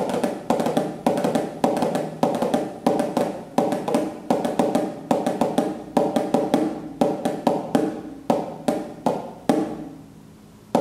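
Snare drum struck with wooden drumsticks, played as a steady, even pattern. Accented strokes land about twice a second, with lighter strokes between them.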